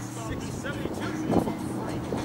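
Players' voices in the background of an outdoor basketball court over a steady low hum, with a single sharp thud about a second and a half in.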